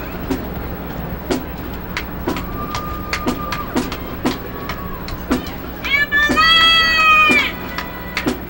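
High school marching band playing: the percussion keeps a steady beat of about two strokes a second. One held note sounds a few seconds in, and about six seconds in a full wind chord swells and is held for about a second and a half, the loudest part.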